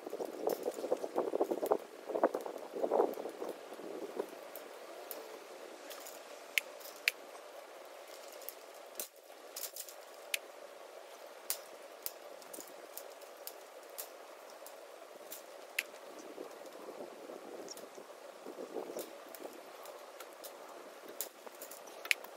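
Crackling, rustling handwork on a welded-wire animal fence, densest in the first few seconds and again near the end, with scattered sharp light clicks and clinks of wire and tools throughout.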